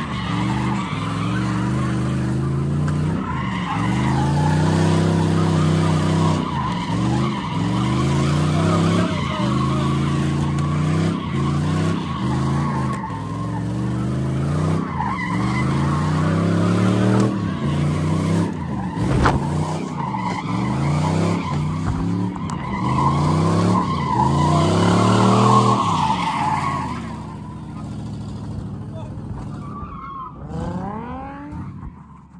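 A car engine revving up and falling back over and over, about once a second, while its tyres squeal on the pavement as it spins. Near the end the revs drop and the sound eases off.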